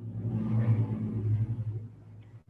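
A low rumbling noise over a steady low hum, swelling and then fading away over about two seconds.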